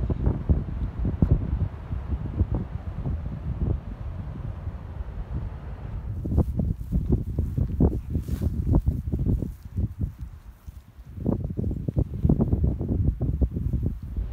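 Wind buffeting the phone's microphone in uneven gusts, mostly a low rumble, with a short lull about two-thirds of the way through.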